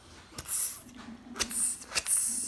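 A person making two short hissing 'pssht' mouth sounds about a second apart, imitating Spider-Man shooting webs.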